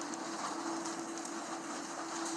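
Steady ambient drone: one low tone held evenly under a faint hiss.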